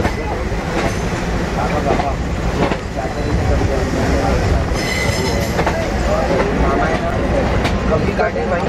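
Express passenger train running, heard from a coach doorway: a steady rumble of wheels on track with occasional clacks over rail joints, and a brief high wheel squeal about five seconds in. Voices chatter under the train noise.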